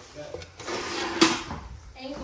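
Glass bathroom scale being handled on a tile floor: a scraping slide as it is grabbed and lifted, with one sharp knock of glass and plastic on tile just past a second in.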